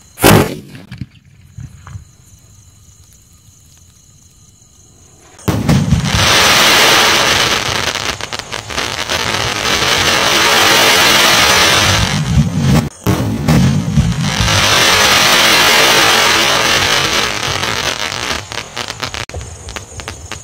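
A 5-inch aerial shell firework (sky shot) fires with one sharp, loud bang just after its fuse is lit. About five seconds later the shell bursts and a loud, dense crackle follows for several seconds. It cuts out briefly about halfway through, then carries on and tails off near the end.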